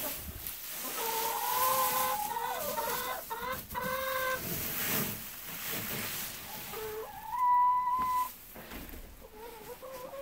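Domestic hens calling in their coop: a drawn-out, wavering call from about a second in to past four seconds, then a louder, steady, held call around seven to eight seconds.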